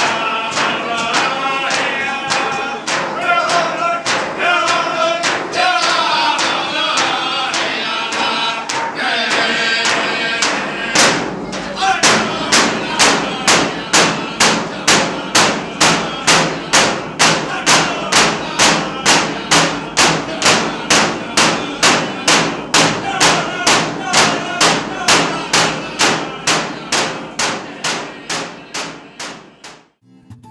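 Yup'ik frame drums beaten in unison with a group singing a dance song. The singing is strongest in the first ten seconds or so. After that the drumbeats go steadily at about two a second while the song continues, and the sound fades out near the end.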